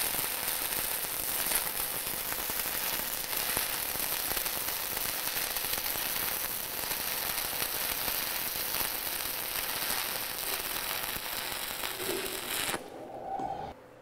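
E6010 stick-electrode welding arc running on steel pipe: a steady, dense crackle that stops abruptly near the end.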